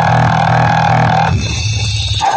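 Music played loud through a large DJ speaker stack of bass cabinets and mid horns under test: a steady droning mid tone over pulsing bass. The mid tone cuts off a little past halfway while the bass runs on.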